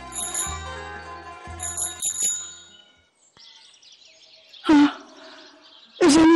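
A bicycle bell rings twice, a single ring then a quick ring-ring, over plucked-string music that fades out about three seconds in. Near the end, a short loud vocal call sounds once.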